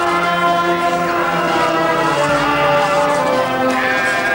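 Brass band playing sustained chords, several notes held together and changing every second or so.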